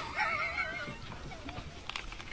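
A brief, high, wavering vocal call in the first second, its pitch wobbling up and down, followed by faint low noise.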